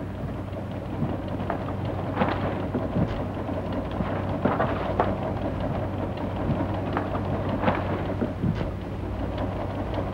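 Steady crackling hiss with scattered small clicks over a constant low hum: the surface noise of a worn 1940s optical film soundtrack, with no dialogue.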